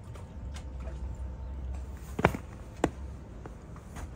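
Outdoor ambience: a steady low rumble with two sharp knocks about half a second apart, a little past the middle.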